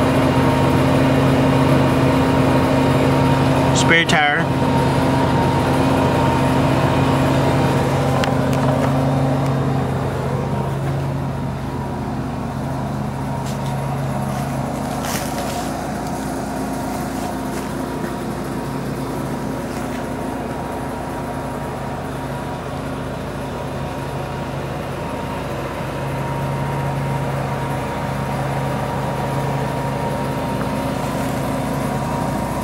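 An engine running with a steady low hum, louder for the first ten seconds or so, then quieter, and rising again near the end. A brief squeaky chirp comes about four seconds in.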